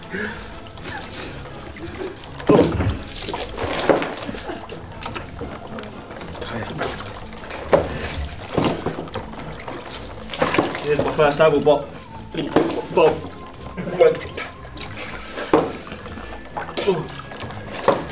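Water splashing and sloshing in tubs as heads are dunked in to bite at floating apples, in irregular bursts, over voices and background music.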